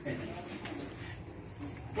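Insects trilling outdoors: a steady, high-pitched, evenly pulsing drone that carries on without a break.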